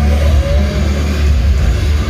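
Loud live rock music from an arena PA, recorded on a phone, dominated by a heavy, steady bass rumble with little else standing out.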